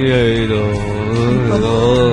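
A young man singing one long held note that wavers slightly and dips a little in pitch about one and a half seconds in.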